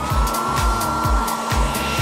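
Electric hair dryer running: its whine climbs to a steady pitch at the very start and holds, with a steady rushing noise. Pop music with a regular beat plays underneath.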